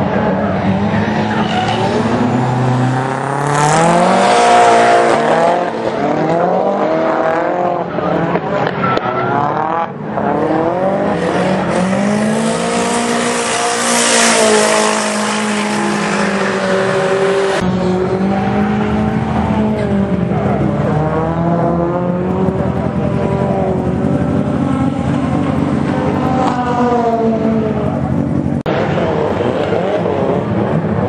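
Nissan 180SX's SR20 four-cylinder engine revving up and down under throttle while drifting, with tyres squealing and skidding, loudest around the middle. The sound jumps abruptly a few times where the footage is cut.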